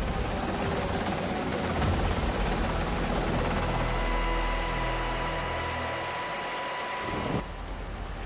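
Helicopter rotor and engine noise: a steady, dense rushing with a low rumble and a faint steady whine. It cuts off abruptly near the end.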